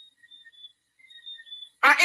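A pause in a spoken talk: near silence with a few faint, thin high tones, then the speaker's voice starts again near the end.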